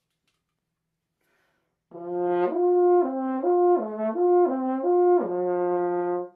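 French horn playing a slurred natural-arpeggio lip-slur exercise. It starts about two seconds in, leaps back and forth between a repeated upper note and lower arpeggio notes in smooth slurs, and ends on a held low note.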